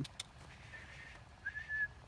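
A faint, short, high whistle, rising slightly and then held, about one and a half seconds in, after a fainter steady high tone.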